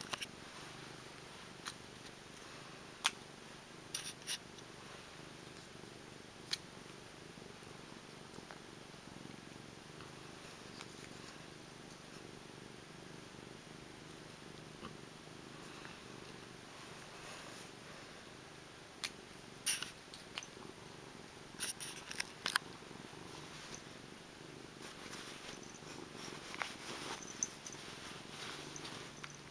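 Domestic cat purring steadily close to the microphone, with occasional short clicks and rustles, more of them in the second half.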